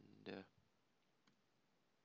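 Near silence with room tone and one faint click a little over a second in.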